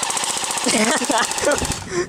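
Airsoft electric gun (AEG) firing a full-automatic burst: a rapid, even rattle of shots that lasts most of two seconds and stops just before the end.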